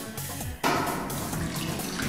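Water pouring in a steady thin stream from a plastic water bottle into a cupped hand over a plate, starting about half a second in, with background music under it.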